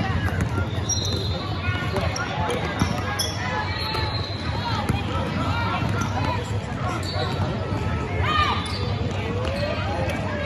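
Basketball dribbled and bouncing on a hardwood gym floor during a youth game, with shouting voices and short squeaks echoing in the large hall.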